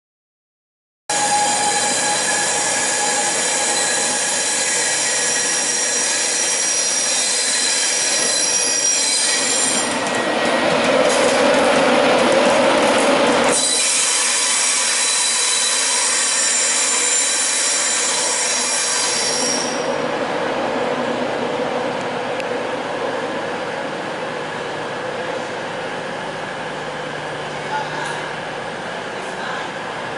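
Electric InterCity train hauled by a Class 91 locomotive running past on the station tracks: several high, steady whining tones over the rumble of the wheels. The rumble is loudest as the train goes by about ten to thirteen seconds in. The whine stops about twenty seconds in, leaving a quieter, even rail rumble.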